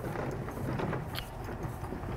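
Quiet handling of a fleece polo wrap as it is rolled up quickly by hand, a faint rustle with a few soft ticks over a low background rumble.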